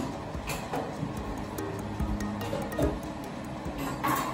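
Soft background music with steady held notes, with a few light metallic clicks as the lid of a metal paint can is pried open.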